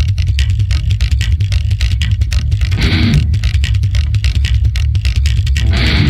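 A heavy hardcore track from a guitar, bass and drums trio starts abruptly: rapid drum hits over a loud bass line. Distorted electric guitar joins near the end.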